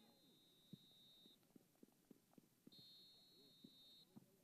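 Faint referee's whistle: two long steady blasts, each over a second, the second starting near the middle, with a few faint knocks in between.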